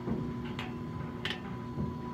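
Oil well pumpjack running: a steady low rumble with a faint steady hum.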